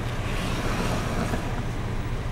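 Steady low hum inside a parked car with its engine running, and a broad rushing noise that swells and fades in the first half.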